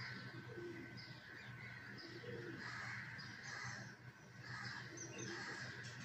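Birds calling, a series of short calls over a steady low hum.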